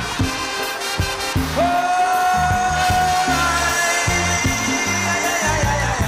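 Live calypso band playing a passage without singing: a steady, bouncing bass line, with one long held note entering about a second and a half in.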